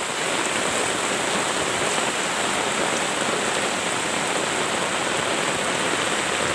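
Heavy rain pouring down steadily onto a flooded road, an even hiss of rain on standing water.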